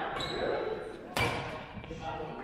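Badminton play in an echoing sports hall: one sharp, loud crack of a racket striking a shuttlecock about a second in, with people's voices.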